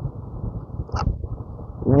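Steady low background rumble, with a short breath about a second in and a man's voice starting a drawn-out word at the very end.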